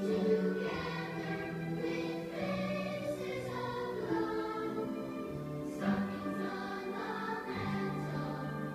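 Choral music: a choir singing slow, held chords.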